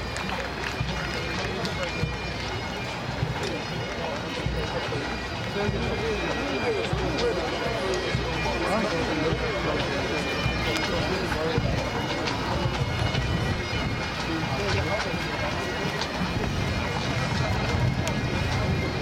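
Highland bagpipes sounding steadily, heard under the chatter of people close by.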